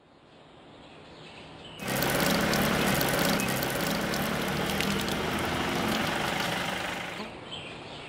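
Water running from a metal standpipe tap, splashing into cupped hands and onto paving. It starts abruptly about two seconds in, runs steadily, and stops about a second before the end.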